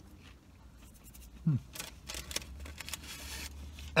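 Quiet eating sounds: soft clicks of chewing fries and the crinkle-fry paper carton being handled, with a short hummed 'hmm' about a second and a half in and a brief paper rustle near the end.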